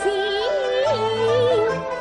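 A Yue (Shaoxing) opera aria: one voice sings a melodic line with a pronounced vibrato and sliding pitch, over traditional Chinese instrumental accompaniment.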